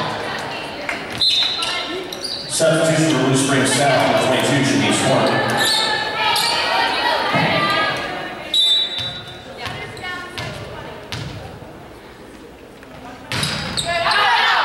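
Echoing voices of players and spectators in a school gymnasium, with a volleyball bouncing on the hardwood floor in a few sharp knocks. The voices grow quieter through the middle and swell again near the end.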